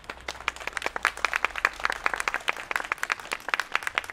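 A small crowd applauding, with many quick, uneven claps.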